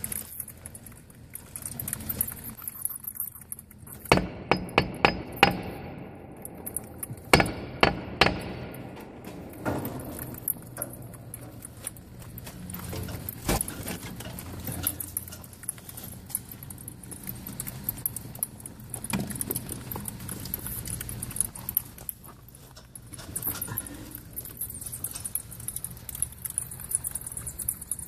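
Sharp clicks, knocks and rattles from a ceiling panel and cables being pushed and handled with a gloved hand, in two quick clusters about four and seven seconds in, with a single knock later on.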